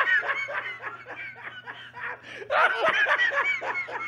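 Men laughing hard, a run of snickering and chuckling that swells again about two and a half seconds in.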